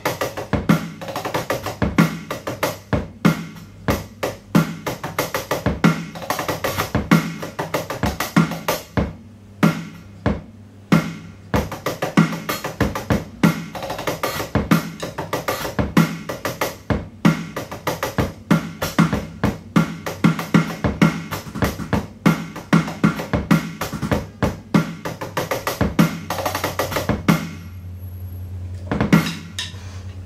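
Electronic drum kit playing a steady rock groove: kick drum and snare in 16th-, 8th- and quarter-note patterns, with extra bass-drum and snare strokes added in. The playing drops away briefly near the end, then comes back with a last run of hits.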